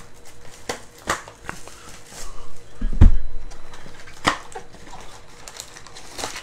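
Plastic shrink-wrap crinkling and tearing off a cardboard trading-card box as it is opened, in short scattered crackles. A dull thump comes about three seconds in.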